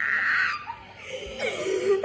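People laughing hard: a breathy burst of laughter at the start, then a wavering laugh toward the end.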